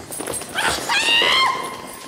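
A high-pitched human cry, rising about half a second in, held, then falling away, like a shriek or yell as people run off.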